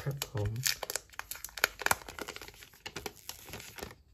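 Thin clear plastic wrapping crinkling and crackling in the hands, many irregular sharp crackles, as a new phone is taken out of its protective plastic.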